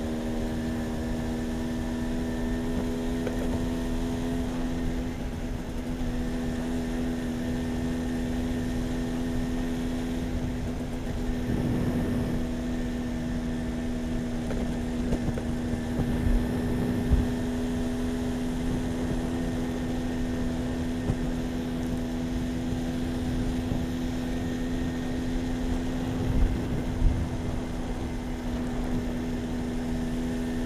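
Small Polini-tuned moped engine running at a steady cruising speed, a constant high-pitched drone with wind and road noise. A few low thumps break in around the middle and again near the end.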